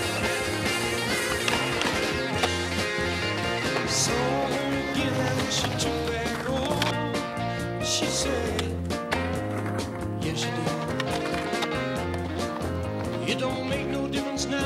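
Music soundtrack with skateboard sounds mixed under it: wheels rolling on concrete and a few sharp clacks of the board hitting the ground.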